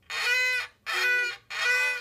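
A young child bowing a small violin: three short, separate bow strokes on one steady note, the first-finger B on the A string, each stroke about half a second with brief gaps between.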